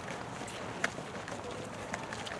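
Footsteps and shuffling of a small group walking while carrying a cloth banner and flag, over a steady outdoor hiss, with one sharp click a little under halfway through.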